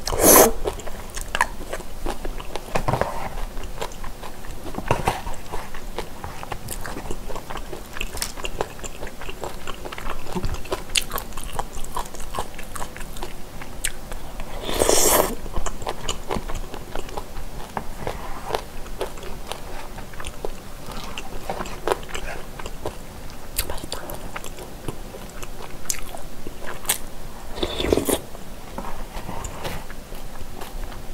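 Close-miked chewing of boneless chicken feet in spicy broth: wet mouth sounds and small clicks throughout. There is a slurp right at the start, and louder bursts about halfway through and near the end.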